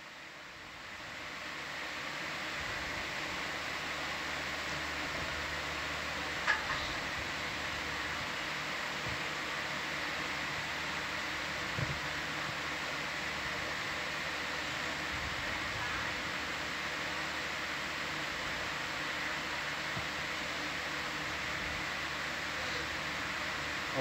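Steady, fan-like hiss of room air handling, swelling in over the first two seconds, with two faint brief sounds about six and twelve seconds in.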